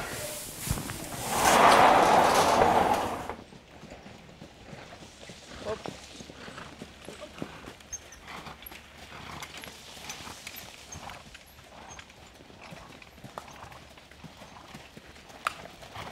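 Hooves of harness-racing trotters pulling sulkies, clopping faintly and irregularly on a soft sand track. It is preceded by a loud rush of noise for the first three seconds, which stops abruptly.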